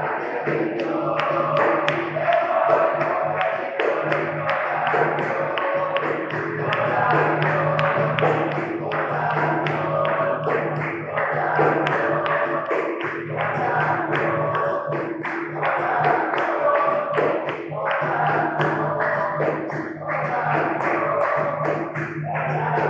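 Capoeira roda music: berimbaus, an atabaque drum and a pandeiro playing a steady rhythm, with hand clapping and group singing.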